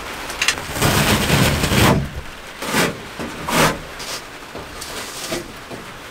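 White fibrous insulation being torn and scraped by hand off a van's bare metal roof panel: a long rustling scrape about a second in, then two short sharp scrapes. It is stuck fast and comes away only in tufts.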